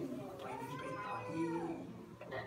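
A man's voice, the preacher at the pulpit, drawing out one long word whose pitch rises and then falls.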